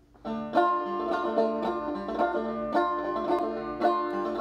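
Banjo being played, starting about a quarter second in with a run of plucked notes and chords at a steady rhythm, a strong stroke roughly every half second.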